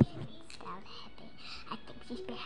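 A sharp knock right at the start, then faint whispering.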